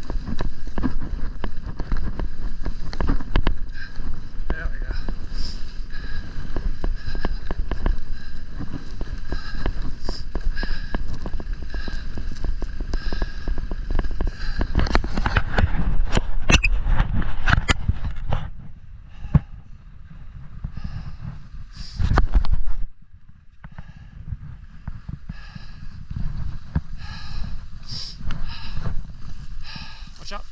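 Continuous scraping of sliding over packed, groomed snow, mixed with wind rumbling on the microphone and many small clicks and chatter, during a fast descent. The noise drops off after about 18 seconds as the rider slows down, apart from one short loud gust or scrape a little past 22 seconds.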